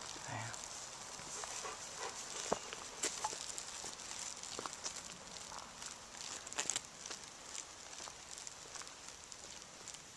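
Quiet woodland background: a steady high hiss with scattered light clicks and crackles, the sharpest about two and a half, three and six and a half seconds in.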